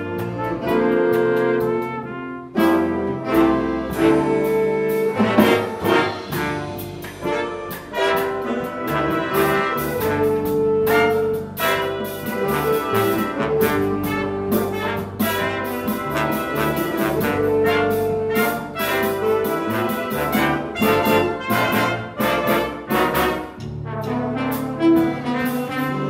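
Jazz big band playing, with brass and saxophone sections sustaining chords over drums and cymbals, and a flugelhorn featured.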